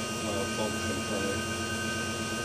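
Electric drive motor turning the ZF 5HP24 automatic gearbox and driveline, with the car's wheels spinning off the ground, giving a steady hum and whine.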